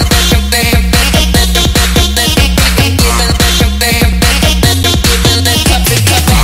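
Jungle Dutch electronic dance music from a DJ mix, played loud with a fast, driving beat and bass notes that drop sharply in pitch.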